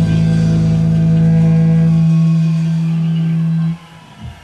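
Live rock band holding its closing chord, a steady low drone, which cuts off sharply near the end.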